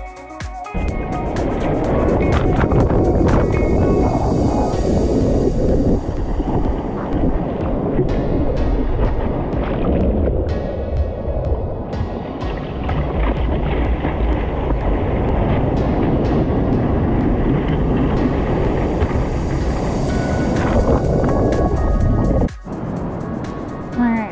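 Background music over loud rushing water and wind noise from a camera at water level among breaking waves; the water noise cuts off suddenly near the end.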